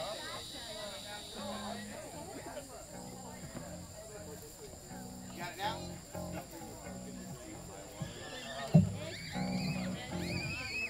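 Short, low held notes from an amplified instrument, sounded one after another in a loose, uneven pattern, over background chatter. A sharp thump comes near the end.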